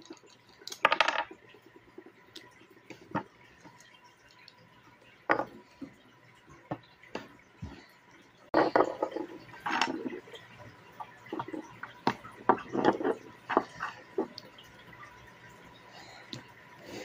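Plastic Lego bricks clicking and clattering as they are picked up, pressed together and set down on a wooden table. The sounds come in scattered bursts of sharp clicks, busiest about halfway through and again a few seconds before the end.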